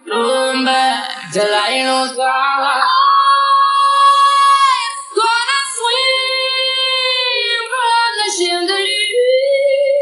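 Female lead vocal in a chillout pop remix, singing long held notes that bend and fall away at their ends, over a steady sustained synth note.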